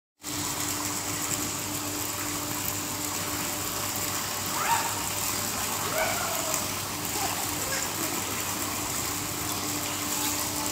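Steady rush of swimming-pool water with a low hum under it, and a child's short high calls about halfway through.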